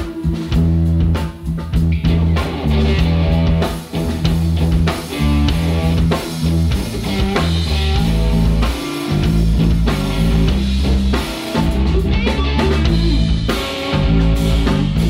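Three-piece rock band playing live: electric guitar, electric bass and drum kit in an instrumental passage.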